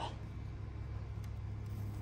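A steady low mechanical hum, with faint rubbing of a cloth wiping the grille letters.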